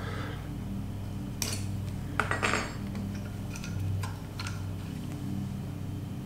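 Metal carburetor body with brass floats being picked up and turned by hand, its parts clinking and knocking against each other and the table in a handful of separate clicks, over a steady low hum.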